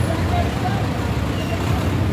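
Steady low rumble of street traffic with faint background chatter.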